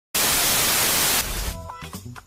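Television static: a loud hiss of white noise that cuts in suddenly and holds for about a second, then drops away. Music with a steady beat starts about one and a half seconds in.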